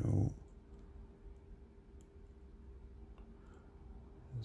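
A hook pick working the pin stacks of a brass padlock under a tension wrench, a few faint, scattered clicks as pins are probed and set one at a time. A brief spoken word right at the start.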